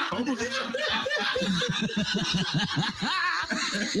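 A man chuckling: a long run of short laugh pulses, about five a second.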